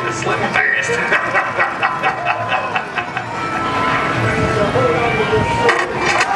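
Voices talking over music playing in the background.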